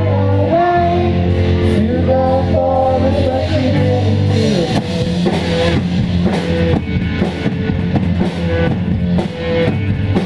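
Live rock band playing electric guitars and a drum kit, with singing. Held chords and sung notes give way about halfway through to a choppier rhythm with regular drum hits.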